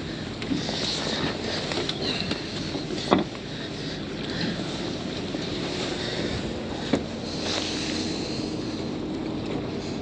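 Steady wind noise on the microphone aboard a small boat on the water, with a sharp knock on the deck about three seconds in and another near seven seconds.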